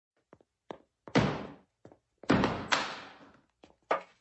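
Toilet stall doors banging shut: three loud thuds that each ring out briefly, the first about a second in and two more close together past the two-second mark, among lighter clicks and taps.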